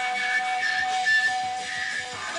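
Distorted electric guitar holding one long steady note.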